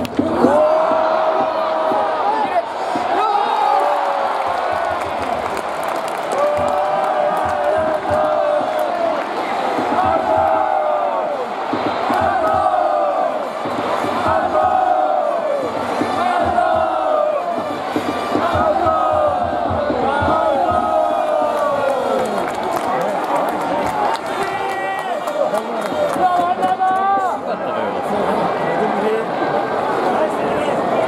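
Baseball stadium crowd chanting and singing a cheering song in unison, phrase after phrase, over a steady background roar of the crowd, with one sharp knock at the very start.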